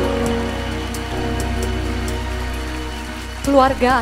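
Live band playing soft held chords under an even hiss of noise. A woman's voice starts speaking over the music near the end.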